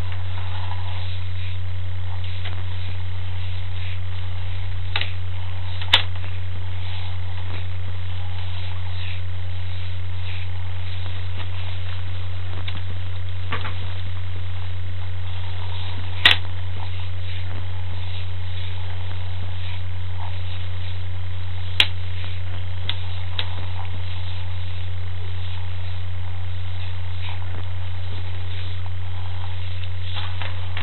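Steady low electrical hum from the sewer inspection camera's recording, with faint scattered ticks and three sharp clicks about 6, 16 and 22 seconds in.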